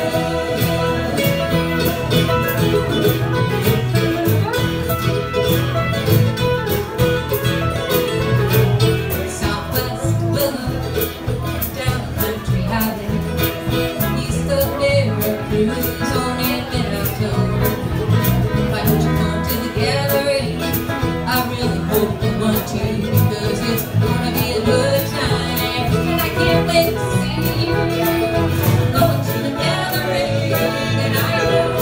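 Live band playing a country/bluegrass-style song on acoustic and electric guitars with a drum kit keeping a steady beat.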